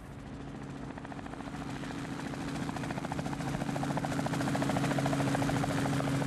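Robinson R44 helicopter in flight, its rotor blades beating rapidly over a steady engine drone, growing steadily louder.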